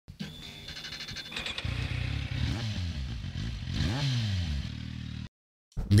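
Motorcycle engine revving, its pitch rising and falling several times, then holding steady briefly before cutting off suddenly about five seconds in.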